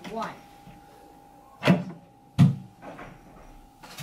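Small in-room safe being opened after its code is keyed in: two loud clunks, the first about a second and a half in and the second just under a second later, as the safe door is unlatched and pulled open.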